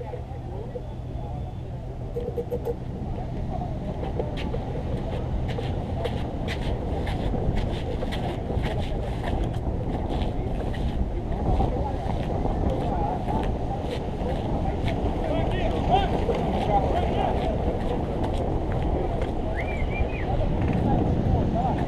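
Wind on the microphone of a camera mounted on a hand-carried hang glider. A run of light clicks comes through from about two to eleven seconds in, and faint indistinct voices come through later.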